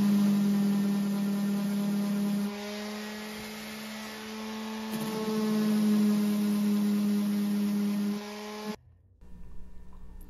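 Random orbital sander fitted with a mesh sanding disc, running with a steady hum against the cut end of a hardwood table leg. It eases off a little in the middle and stops abruptly near the end. The sander is being pressed hard enough that the mesh disc is being worn through.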